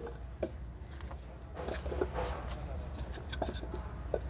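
Scattered light clicks and rubbing of plastic and metal as the plastic protective caps are pulled off the three cable bushings of a medium-voltage ring main unit. A steady low hum runs underneath.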